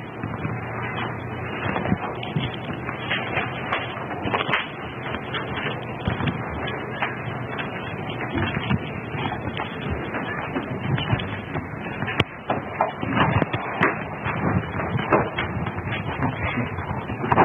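Steady hiss of a poor-quality meeting-room recording, scattered with frequent small clicks and rustles.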